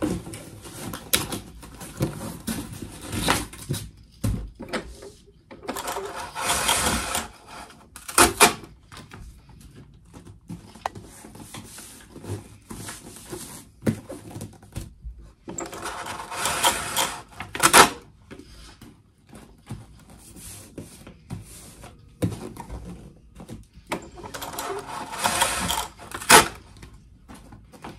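Order packing by hand: a cardboard mailer box folded and handled with scraping, rustling and small knocks. Three times a rasping pull of about a second ends in a sharp click, the last near the end as packing tape is pulled off its roll.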